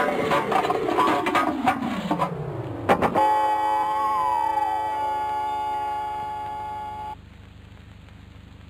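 Cartoon crash sound effects. A long falling tone over music drops for about three seconds and ends in a sharp crash. Then comes a sustained ringing chord with a wavering tone that rises and falls, a dizzy seeing-stars effect, which cuts off suddenly about seven seconds in.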